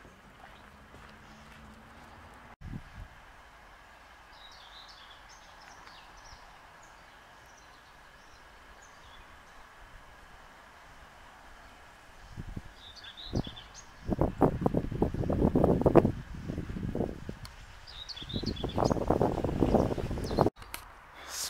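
Small birds chirping faintly over a quiet open-air background. From about twelve seconds in, loud irregular gusts of wind buffet the microphone with a low rumble.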